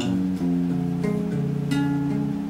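Acoustic guitar played alone in an MPB accompaniment, chords ringing and changing a few times with fresh strokes on the strings.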